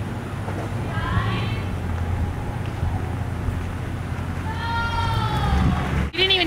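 Pickup truck engine running with a low rumble that grows louder near the end as the truck comes closer. Over it a person gives plaintive wailing cries, two short ones about a second in and a longer falling one near the end.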